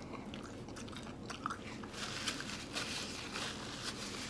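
Close-up chewing of a bite of fried chicken: a run of small crunches and wet mouth clicks as the breading is chewed.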